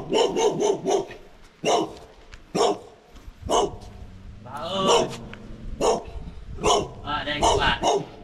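A small dog barking at an unfamiliar visitor: a quick run of four sharp barks at the start, then single barks about once a second, bunching up again near the end.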